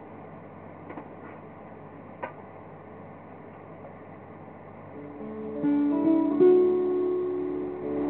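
Low room noise with a few faint clicks, then about five seconds in an acoustic guitar starts strumming chords, the introduction to a ballad.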